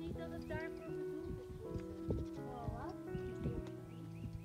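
Background music of long held notes, with a few short wavering pitched sounds and scattered light knocks over it.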